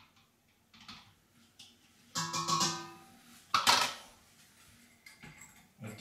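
A white funnel being worked out of a glass bottle's neck: a few faint clicks, a short ringing squeak about two seconds in, then a sharp clink a second later.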